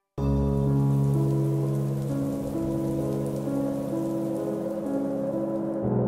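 Steady rain with slow, held chords of background music underneath, the notes changing every second or so; both start suddenly just after a moment of silence.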